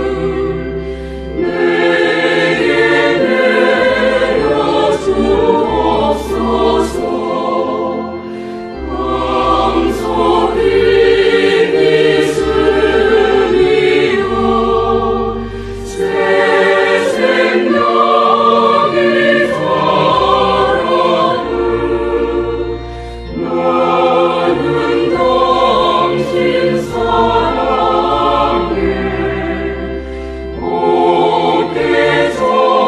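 A choir sings a Korean Christian hymn with instrumental accompaniment. Its lines are about the heart as a small garden the Lord tends, and grace falling like spring rain.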